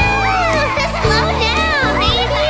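Children's song backing music with a steady bass line, under high, lively children's voices that slide up and down in pitch, like excited chatter and calls.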